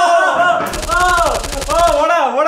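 A fast rattling run of sharp cracks, roughly twenty a second, starting a little past halfway and lasting just over a second, over a voice.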